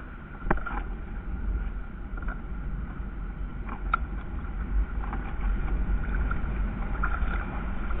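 Steady low wind rumble on the microphone over water lapping at a kayak, with a few light clicks and knocks from a landing net being handled, the clearest about half a second in and again about four seconds in.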